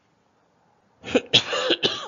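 A man coughing: a quick run of loud coughs starting about a second in.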